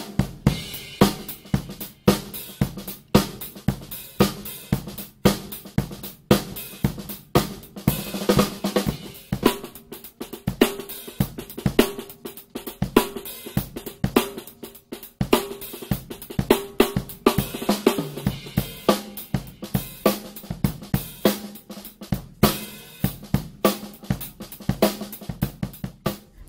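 Drum kit played continuously, with Sonor Pure Canadian maple snare drums (13-inch and 14-inch) prominent among hi-hat, cymbals and bass drum. The strikes come thick and fast, over a steady ring from the drums.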